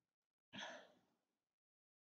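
A single faint sigh: a noisy breath out that starts sharply about half a second in and fades away over about a second, against near silence.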